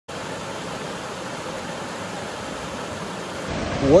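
A fast-flowing creek rushing over rocks, a steady even rush of water. It cuts off abruptly about three and a half seconds in, and a man's voice starts at the very end.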